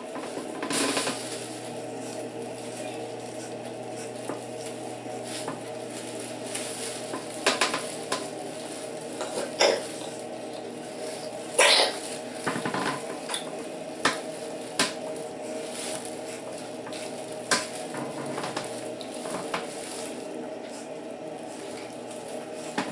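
Corded electric hair clipper with a one-and-a-half guard running with a steady buzzing hum as it is worked over a toddler's head. Sharp clicks and scrapes sound every second or so as the clipper moves through the hair.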